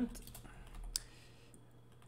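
A few computer keyboard keystrokes, short sharp clicks, the clearest about a second in, as code is typed.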